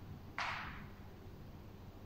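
A single short, sharp exhale about half a second in, fading quickly, from a woman working through a Pilates ring exercise.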